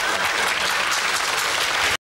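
Studio audience applauding steadily, cutting off suddenly at the very end.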